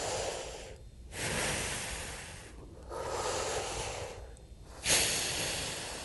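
Deep, audible breaths taken in and out through an open mouth, each breath shaped like a whispered "ha" in both directions: diaphragm breathing as practised by wind players. Four long breaths of a second or more each, with short pauses between; the last, near the end, is the loudest.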